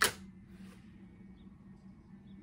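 Quiet room tone with a low steady hum, opened by a single sharp click.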